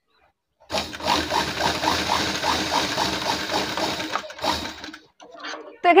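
Sewing machine stitching a seam that joins two bias-cut cloth strips, starting about a second in with an even needle rhythm of about four stitches a second. It pauses briefly, runs again for under a second, then stops.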